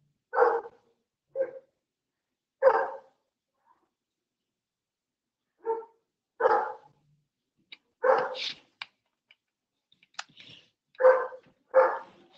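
A dog barking, about eight single barks at irregular intervals.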